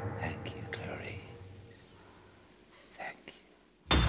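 Faint whispered voice over a low sustained music tone that fades away, then a couple of short whispers about three seconds in. A sudden loud music hit comes in right at the end.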